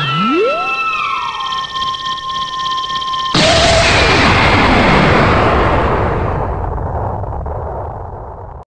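Synthesized sci-fi sound effect. Several pitch glides, one rising from low and others falling from high, settle into a steady chord of high tones. About three seconds in, a sudden loud explosion-like blast cuts in and slowly fades.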